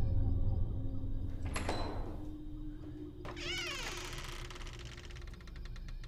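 Horror-film sound design: a low drone fading out, a sharp sting with a falling tail, then a wavering creak that breaks into a run of fast clicks.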